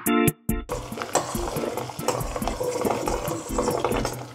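Plucked guitar music; from about a second in, a steady bubbling hiss of a pot of boiling water runs under it.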